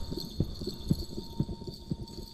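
Quick, irregular soft taps of a gloved hand on a door's glass panel, several a second, the loudest about halfway through.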